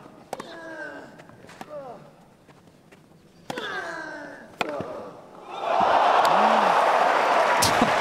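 Tennis rally on a grass court: sharp racket-on-ball strikes, the early ones each followed by a player's loud grunt, the last a 107 mph forehand winner from Juan Martin del Potro. About five and a half seconds in, the crowd bursts into loud cheering and applause.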